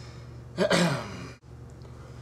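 A man's breathy sigh, one loud exhale with a falling pitch about half a second in, lasting under a second.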